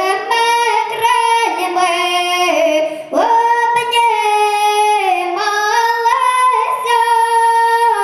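A young girl singing solo into a microphone, holding long notes that step up and down in pitch, with a short break for breath about three seconds in.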